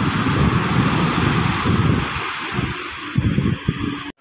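Wind buffeting the microphone in irregular low gusts over a steady wash of sea noise.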